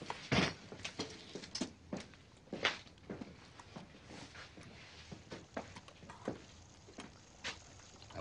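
Irregular light clicks, taps and rustles of men eating at a table, with paper and foil wrappers, bottles and plates. The loudest comes about half a second in, another near three seconds in.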